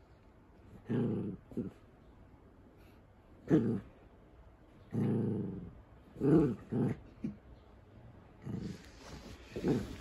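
Poodle growling in play while tugging at a sock: a string of short growls, about nine, some lasting up to a second. Near the end there is a rustle as the dog scrambles on the bedding.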